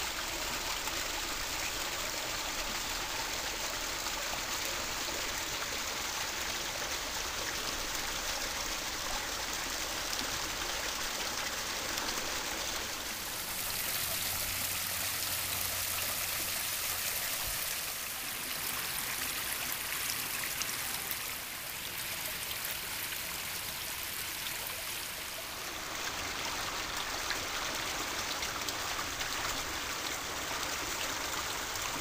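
Koi pond waterfall, fed by a pump moving about 4,500 gallons an hour, with water cascading over stacked stone and splashing into the pond in a steady rush. The sound turns brighter and hissier for about twelve seconds in the middle.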